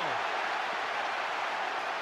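Stadium crowd noise, a steady, even din of thousands of spectators in the stands. A man's voice tails off at the very start.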